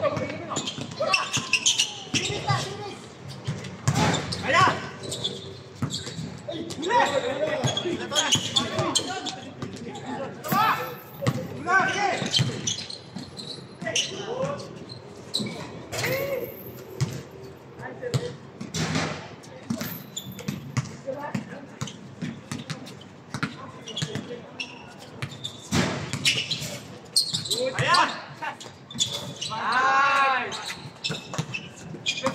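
Basketball bouncing repeatedly on a hard court, with players' voices calling out throughout.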